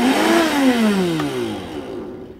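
Silver Crest commercial power blender running with an empty jar. Its motor whine rises briefly, then falls steadily in pitch and loudness as the motor is switched off and spins down.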